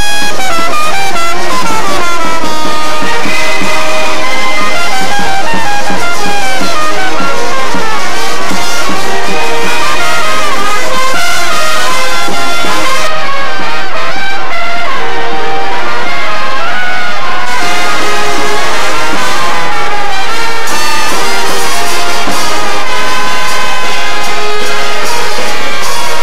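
Colombian sabanero wind band playing a porro: trumpets, trombones and clarinets together in a loud, steady full-ensemble melody.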